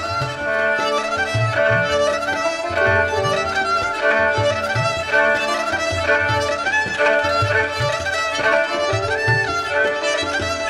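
Instrumental Persian–Indian improvisation: a kamancheh (bowed spike fiddle) plays a gliding melody over a steady tabla pulse.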